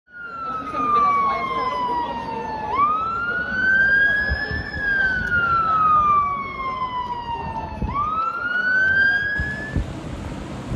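Emergency vehicle siren wailing. Its pitch slides slowly down over a few seconds, jumps back up and climbs again, in long repeating cycles, over a low rumble of street noise. The siren cuts off shortly before the end.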